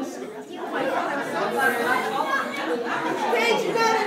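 Several people talking at once in a room: overlapping, indistinct conversation.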